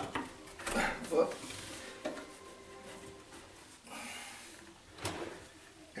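Wooden cabinet drawer on metal drawer slides being handled and pulled open: a few light knocks and rubs, with a short slide about four seconds in.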